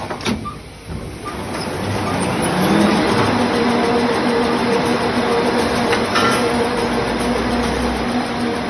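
Toilet roll production line's paper rewinder running, a steady loud mechanical din with a low hum. It builds up over the first three seconds and then holds steady.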